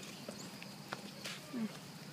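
Stroller being pushed along a paved path: a few faint, irregular clicks and knocks from the wheels and frame. A short hummed "mm" from a voice comes near the end.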